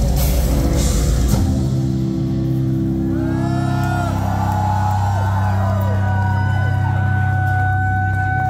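Live symphonic black metal band playing full-out, with drums and distorted guitar, stops about a second and a half in. A low held note rings on beneath audience cheers and a long whistle.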